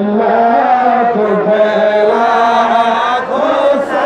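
A man chanting a devotional song into a microphone, drawing out long, wavering sung notes with barely a break.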